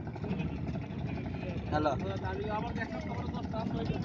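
Steady low rumble of a motorboat's engine running, with a voice calling "hello" about two seconds in.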